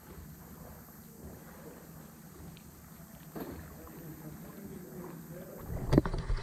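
Quiet lake-water ambience: gentle water lapping and sloshing around a camera held at the surface, with a louder low bump near the end.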